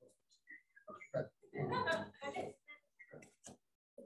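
Indistinct voices with no clear words: short vocal sounds and murmurs, with a louder, rougher vocal burst around two seconds in.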